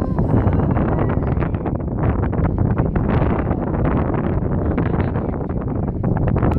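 Strong wind buffeting the microphone: a loud, rough low rumble that flutters rapidly with the gusts.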